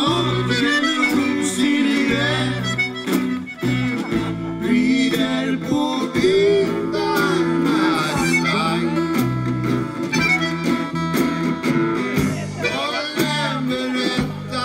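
Live band playing a folk-rock song: strummed acoustic guitars and drums, with an accordion carrying a wavering melody line.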